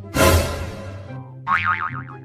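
Comic sound effects over background music: a noisy hit just after the start that fades over about a second, then a wobbling, springy boing-like tone about one and a half seconds in.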